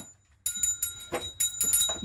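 A brief silence, then the metal leash clip and collar buckle on a German Shepherd puppy jingling and clicking as it moves about, with a few sharp ticks.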